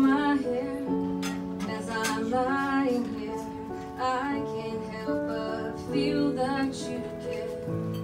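A woman singing a song with her own piano accompaniment, the piano's held chords ringing on under her voice and between her lines.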